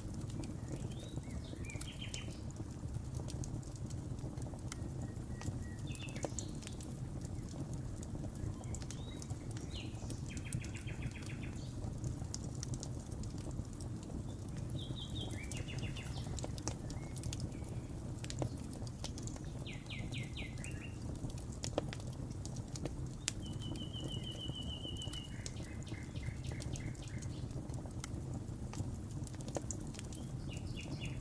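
Songbirds giving short chirps and trills every few seconds over the crackle of a wood fire, with a steady low rumble underneath.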